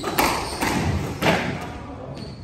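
Squash rally: sharp knocks of the ball off rackets and the court walls, three in about a second, each ringing on briefly in the enclosed court.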